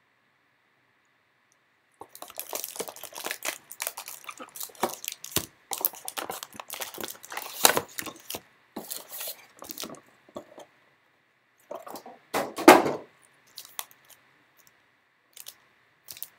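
Foil wrappers of Panini Donruss Elite basketball card packs crinkling and crackling as the packs are pulled from the hobby box and shuffled by hand. It starts about two seconds in as a run of quick rustles with short pauses, with one louder crunch about three seconds before the end.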